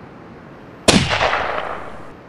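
Sound effect of a single rifle shot: one sharp crack a little under a second in, followed by an echo that fades over about a second and then cuts off.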